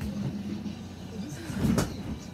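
A brief rumbling thump with rustling, close to the microphone, about three-quarters of the way in, as a person drops down to sit on a bed.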